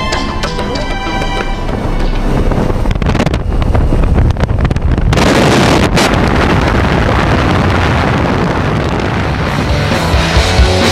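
Music fades out over the first two seconds, giving way to the loud rush of wind and propeller noise at a jump plane's open door, buffeting the microphone. The rush becomes stronger and steady about five seconds in.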